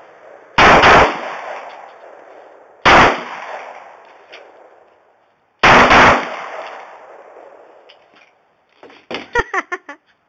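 Gunshots in three groups: two close together, then one, then two more. Each group is followed by a long fading echo. Near the end there is a quick run of softer clicks.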